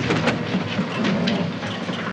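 A dense rumbling noise with fast crackling running through it, from a film's soundtrack.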